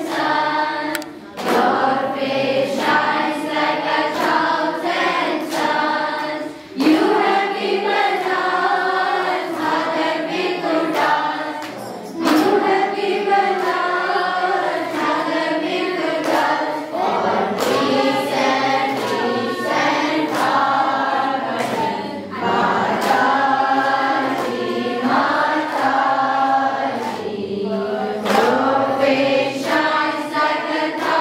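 A group of voices singing a devotional bhajan together, over sharp percussive strokes.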